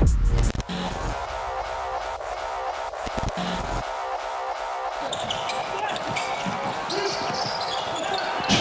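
Basketball court sound: a ball bouncing on a hardwood floor, with many short thuds, under a quieter music bed after a louder musical passage ends about half a second in.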